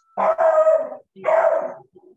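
A dog making two drawn-out, howl-like barks, each just under a second long, with a short gap between them.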